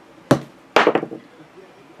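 A small plastic die thrown onto a table, landing with a sharp knock and then a louder clatter as it bounces and rolls to a stop.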